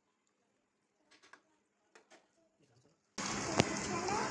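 Near silence with a few faint ticks, then, near the end, a steady hiss cuts in abruptly with a single click: the tomato-based karahi cooking over the gas flame.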